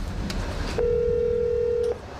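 A steady electronic telephone tone sounding once for about a second, over a low rumble.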